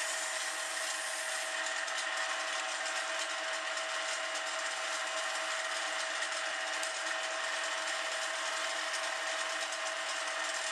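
A small benchtop wood lathe runs with a steady motor whine while a sandpaper strip rubs against the spinning fly-rod grip, a continuous dry sanding hiss over the hum.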